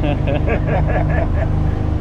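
A man laughing in quick repeated bursts over the steady drone of a boat's engine.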